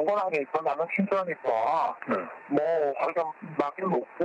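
Only speech: a person speaking Korean in an interview, the voice thin and muffled as if band-limited.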